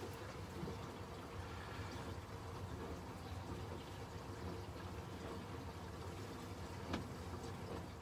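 Engine oil pouring from a plastic jug through a plastic funnel into a marine diesel engine's oil filler, a faint steady trickle. A light knock near the end.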